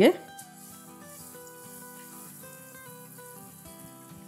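Garlic paste sizzling faintly in hot oil in a nonstick frying pan, under quiet background music.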